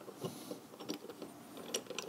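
Faint clicks and light scraping of a one-piece aluminium scope mount being handled on a rail, its metal clamp pieces shifting under the fingers as they are pushed flush; a few small ticks.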